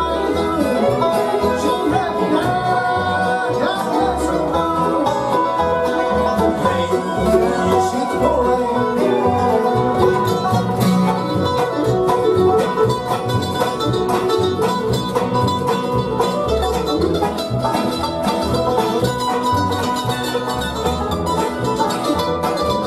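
A live acoustic bluegrass band playing a song at a steady tempo: five-string banjo rolls over mandolin, acoustic guitar, fiddle, resonator guitar and a plucked upright bass beat.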